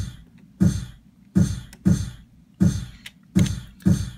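Kick drum sample sliced from recorded audio, played back by the ER-301 sound computer's sample player and retriggered by gates: about seven short thuds at roughly one and a half a second, each with a brief hiss on top.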